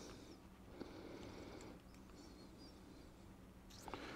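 Near silence, with faint handling noise and a small tick about a second in as a small eye screw is turned by hand into a wooden whistle.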